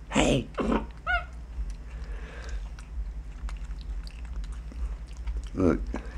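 Black-capped capuchin monkey eating: two short vocal sounds at the start, then a brief high-pitched squeak about a second in, followed by quiet eating and handling clicks.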